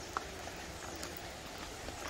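Footsteps on a cobbled stone path: a few sharp clicks of feet striking rock, about a second apart, over a steady background hiss.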